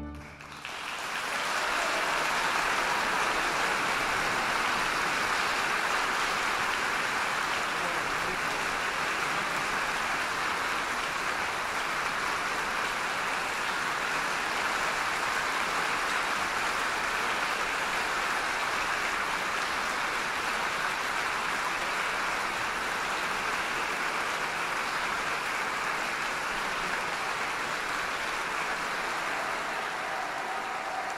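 Concert-hall audience applauding, building up over the first two seconds and then holding steady.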